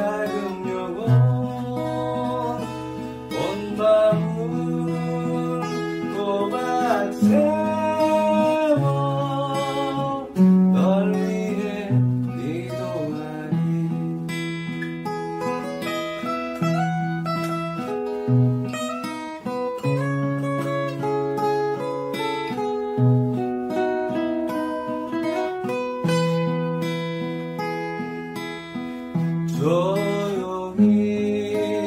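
Steel-string acoustic guitar, capoed, played fingerstyle: a melody picked over low bass notes that change about once a second.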